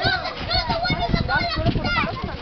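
Several children's voices chattering and calling out at once, overlapping one another without a break.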